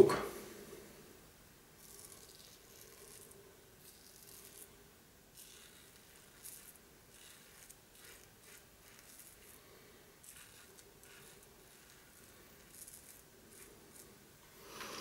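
Razorock SLAB safety razor scraping through lathered stubble on the neck, in a string of short, irregular strokes, faint.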